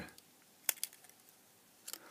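A single sharp click about two-thirds of a second in, followed by a fainter tick, against near silence: fingers handling the cut-open plastic wrapping of a small lithium cell.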